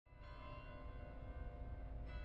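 A deep, bell-like struck tone sounds suddenly out of silence and rings on over a low rumble, part of a film trailer's opening sound design.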